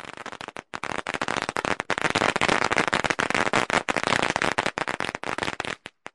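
A string of firecrackers going off: a long run of rapid, irregular bangs that crackle on for several seconds, with a brief gap about half a second in, stopping near the end.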